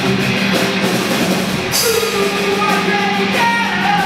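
A rock band playing live: electric guitars, bass and drum kit, with a cymbal crash about two seconds in.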